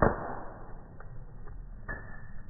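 Wood in a bonfire crackling, slowed down: one loud pop trailing off in a hiss over about half a second, then a few faint pops.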